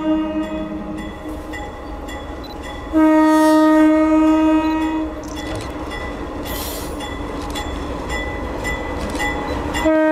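Multi-chime air horn on approaching diesel locomotive MEC 7489, a horn taken from MEC 377. A held blast ends about a second in, and a second blast of about two seconds starts near three seconds. Between the blasts the locomotives' diesel engines rumble and their wheels click on the rail as they draw closer, and the horn sounds again at the very end.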